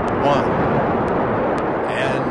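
Space Shuttle Atlantis's three main engines and twin solid rocket boosters firing at liftoff: a loud, steady noise with most of its weight in the low end.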